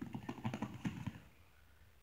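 A quick run of soft ticks and rustles from grappling, as gi cloth and hands shift against each other and the mat, stopping about a second in.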